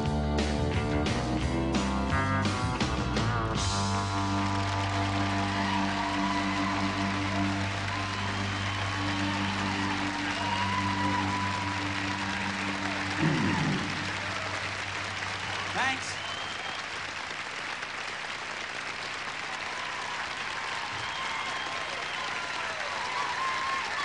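A country-rock band with strummed acoustic guitar ends a song on a final chord that rings out for several seconds. The audience applauds and cheers through it, with a few whistles.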